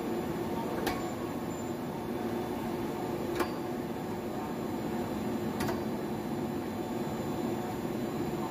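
Steady running hum of a plastic film blowing machine and its film winder. Three sharp clicks come roughly two to two and a half seconds apart.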